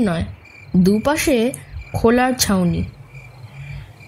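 Crickets chirping as a steady night ambience laid under the reading.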